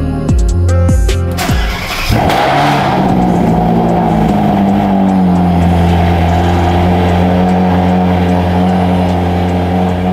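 Ferrari engine starting with a loud burst about two seconds in, then running steadily at a fast idle that firms up around five seconds in.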